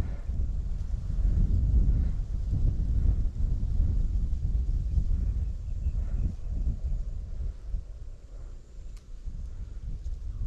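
Wind buffeting the microphone: an uneven, gusty low rumble that eases off somewhat in the last few seconds.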